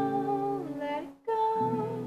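A woman singing to her own acoustic guitar, played with a capo. Two sung phrases over a held chord: the first ends on a falling note about a second in, and the next begins just after.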